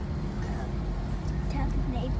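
Airliner cabin noise: a steady low engine rumble with a constant hum running through it, and faint voices over the top.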